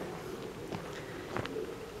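Quiet outdoor background with a faint bird call, and two light ticks in the middle.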